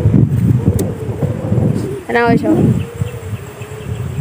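A wavering low buzz, like an insect flying close to the microphone, with one short vocal sound a little after two seconds in.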